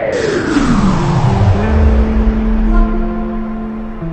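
A long downward pitch sweep, falling from high to a deep rumble over about two seconds, as in a slow-motion edit. Background music with held notes follows.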